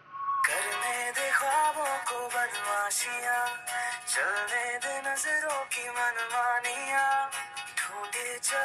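Hindi pop song with a sung vocal melody over instrumental backing, starting about half a second in after a brief near-silence.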